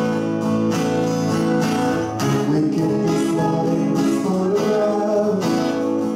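Live acoustic guitar strumming chords in a steady rhythm, with a singer's voice over it.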